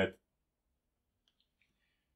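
A few faint, brief high squeaks about halfway through, from a black marker writing on a whiteboard. The marker is writing poorly.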